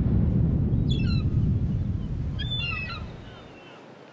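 Logo intro sound effect: a low rumbling wash that fades away over the last second and a half, with a bird calling twice over it, about a second in and again a second and a half later.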